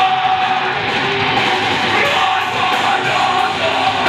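A rock band playing loud and live: electric guitar over drums with cymbal hits, and a singer's voice in the mix.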